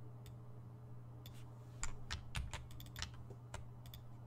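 Typing on a computer keyboard: a scattered run of irregular keystrokes starting about a second in, over a steady low hum.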